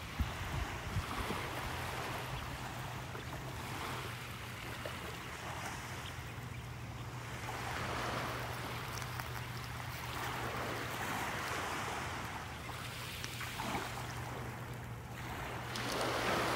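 Small Gulf waves lapping on a shelly beach, the wash swelling and easing every few seconds, with wind on the microphone. A steady low hum runs underneath.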